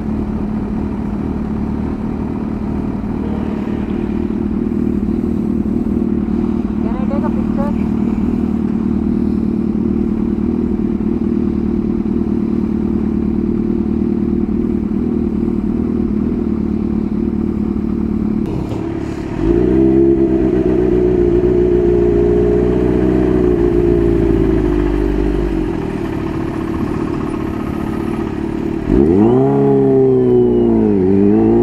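Kawasaki Ninja H2's supercharged inline-four idling steadily at a standstill. About two-thirds of the way through, a louder, deeper engine note comes in for about six seconds. Near the end the bike revs up sharply and pulls away, its pitch rising and then dropping at a gear change.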